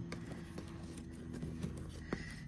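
A hand rummaging inside a small Louis Vuitton Nano Speedy handbag, making a few faint light clicks and rustles as items inside are moved.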